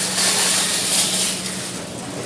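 Loud rustling hiss of the handheld phone being moved and rubbed near its microphone, easing off just before the end, over a steady low hum.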